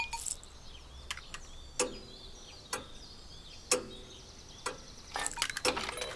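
Cartoon sound effects during a wordless pause: a slow, regular tick or knock about once a second, with faint high bird chirps behind it.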